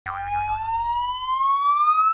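Intro sound effect: a single pitched tone that starts abruptly and glides slowly and steadily upward, like a slide whistle or riser, over a low rumble that fades out about a second and a half in.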